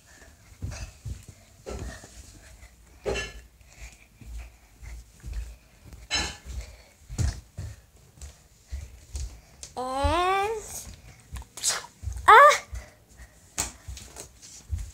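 A pet dog giving two rising whines, the second shorter and louder, amid the knocks and rustles of a phone being handled.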